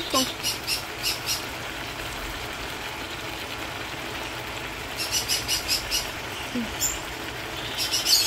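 Pet parrots chirping in quick runs of high, rapid calls: once in the first second or so and again from about five seconds in, over a steady low background.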